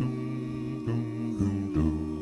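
A five-voice a cappella doo-wop group holding a sustained chord of wordless harmony, with the bass voice stepping to a new note about three times and dropping lower near the end.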